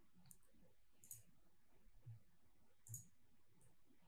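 A few faint, scattered clicks of a computer mouse in near silence.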